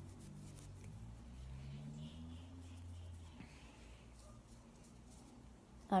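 A television film soundtrack playing faintly and muffled in the background, its low voices fading out about halfway through. Light rustling and ticking from hands working powder over the silicone doll.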